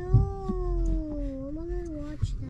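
A long drawn-out wailing note from a voice, held for about two seconds and sliding slowly down in pitch, with a low thump near the start.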